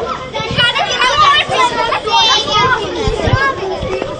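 A group of children chattering, high-pitched young voices talking over one another.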